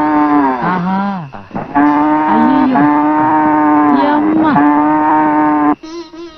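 A cow mooing in several long, drawn-out calls, each held on one steady, almost sung pitch with swooping glides between them; the calls stop suddenly near the end.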